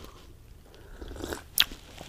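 A man sipping a drink from a mug: soft slurping and swallowing, with one sharp mouth click about one and a half seconds in.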